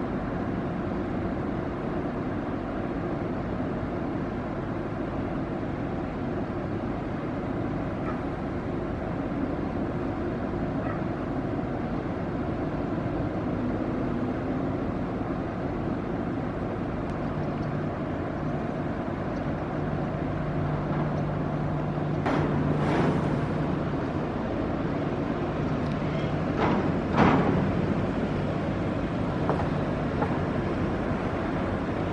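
Steady running noise of a catamaran crew transfer vessel under way close by, with a low steady hum that comes in about halfway through. Two brief louder bursts stand out near the end.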